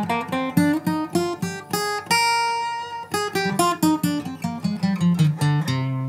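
Steel-string acoustic guitar (Takamine acoustic-electric) picked one note at a time, running through a C minor scale at about three or four notes a second, with one note held for about a second two seconds in.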